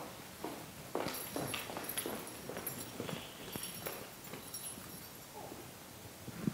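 Soft, irregular knocks, clicks and rustling from an audience hall, clustered in the middle seconds: handling noise and footsteps as the roaming audience microphone is passed to the next questioner.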